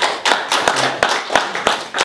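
Small audience applauding at the end of an acoustic guitar song: a quick, uneven run of individual hand claps.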